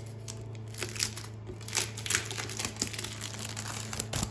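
Clear cellophane sleeve crinkling as it is pulled open by hand, in irregular crackles and rustles, over a steady low hum.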